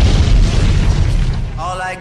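A deep boom sound effect in a dance music mix played over loudspeakers, cutting off the beat and fading away over about a second and a half; a voice sample begins near the end.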